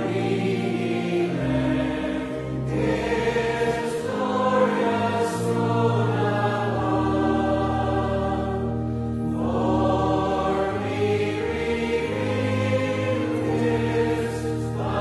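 Congregation singing a slow hymn with organ accompaniment, in long held phrases with short breaks between the lines.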